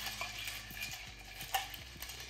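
A spoon stirring in a metal cocktail shaker: a low hiss with a few light clinks, the sharpest about one and a half seconds in.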